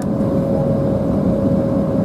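Steady cabin rumble of an Embraer 190 taxiing after landing, its GE CF34 turbofans at idle, with a steady mid-pitched hum running through it.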